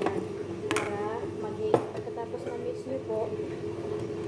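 Brief bits of a woman's speech over a steady hum, with one sharp knock a little under two seconds in.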